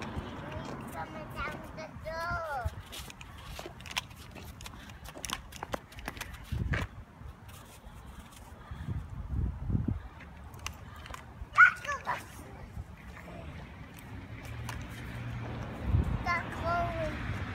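A toddler's brief, wordless babbling, with one short, loud high-pitched call a little past the middle, over quiet outdoor background with scattered small clicks and a few low bumps.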